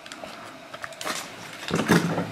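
Handling noises of a plastic toy egg and a soft squishy toy: light knocks, clicks and rustles as the squishy is worked out of its plastic shell, strongest near the end.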